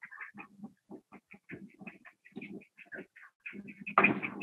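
Faint animal calls, short irregular notes several times a second.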